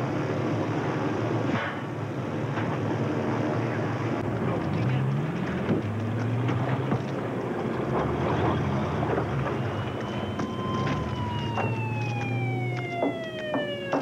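A vehicle siren, its pitch falling slowly through the last few seconds and starting to climb again at the very end, over a steady low hum and background clatter.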